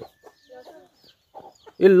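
Chickens clucking softly, with short high falling peeps repeating throughout. A voice starts speaking near the end.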